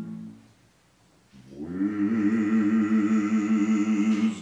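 Unaccompanied Orthodox liturgical chant. A held sung note fades out, about a second of near silence follows, then a new long sung note swells in about one and a half seconds in and holds with a slow waver.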